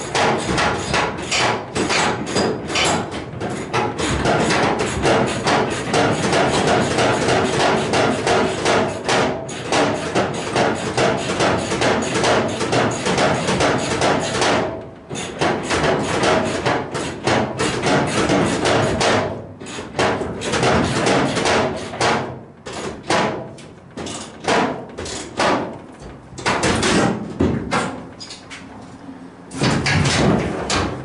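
Hammer blows struck in quick succession, about five a second, for roughly fifteen seconds. The blows then turn slower and broken, with short pauses between bursts.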